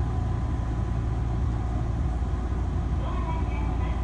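Running noise inside a Meitetsu limited express train car: a steady low rumble of wheels and traction gear on the rails, shifting slightly about halfway through.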